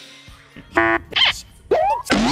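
Cartoon-style comedy sound effects: a short buzzing tone about three-quarters of a second in, a brief burst, then a springy rising glide like a boing near the end.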